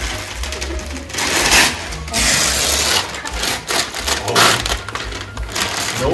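Gift-wrapping paper being torn off a box and crumpled, in several loud rips and rustles.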